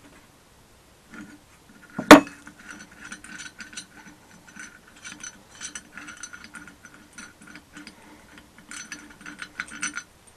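Ratcheting spanner clicking rapidly as bolts are undone from a brake disc, with one loud metallic clank about two seconds in.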